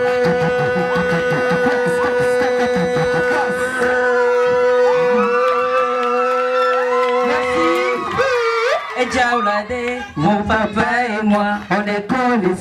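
Male vocalists singing live through a PA over a backing track that holds one long sustained chord. The chord cuts off about eight seconds in, and the voices carry on unaccompanied.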